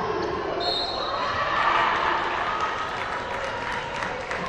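Sounds of a basketball game in a large gym: a ball bouncing on the hardwood, voices of players and spectators, and a brief high squeak about half a second in.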